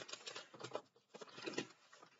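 Faint, irregular scratching and rustling of paper notes being handled, many small crackles close together.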